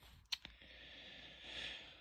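Plastic video cases being handled: one light click, then a faint, soft rustle that swells and fades.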